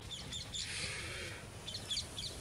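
Small birds chirping: a few quick, high chirps near the start and again near the end. Between them, from about half a second in, comes a short burst of hiss lasting under a second.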